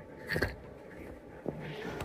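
Faint storm noise from heavy rain outside, heard from indoors, with a short knock about half a second in and a soft click about a second later.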